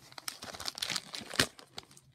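Christmas wrapping paper on a gift box crinkling and rustling as the box is handled, with one sharp knock about one and a half seconds in.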